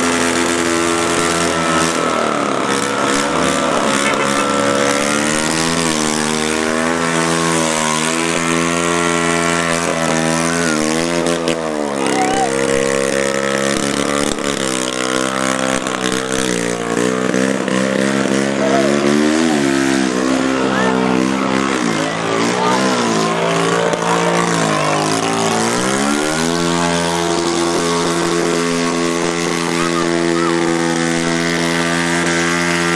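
A single motorcycle engine revved over and over, its pitch climbing and falling every couple of seconds, sometimes held high and sometimes dropping back toward idle.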